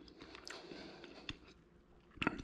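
Faint chewing of a bite of smoked chicken wing, with a few small clicks.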